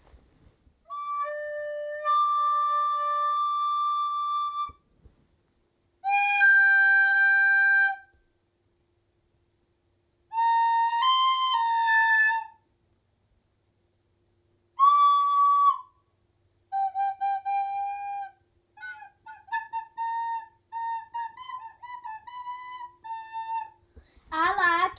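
Plastic soprano recorder played solo: four long held notes or short phrases with silences between them, then a quicker run of short notes from about two-thirds of the way in.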